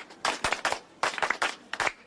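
Several people clapping hands together in a tejime, the rhythmic ceremonial clap of a Japanese hagoita market that closes a sale. The sharp claps come in quick, evenly paced groups.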